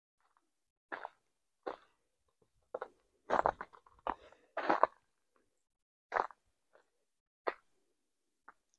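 Footsteps crunching through dry fallen leaves on a forest trail, a slow, uneven walking pace of about one step a second, loudest in the middle of the stretch.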